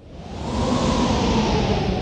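An edited-in whooshing sound effect: a noisy swell that builds quickly, peaks about a second in, then slowly fades, with a faint falling tone inside it.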